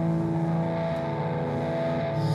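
Live rock band holding a sustained, distorted chord that drones at a steady pitch between sung lines, with no clear beat.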